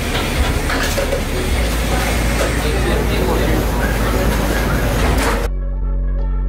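Open-air eatery ambience: background voices over steady noise and a low hum. About five and a half seconds in, it cuts off suddenly to background music with steady held tones.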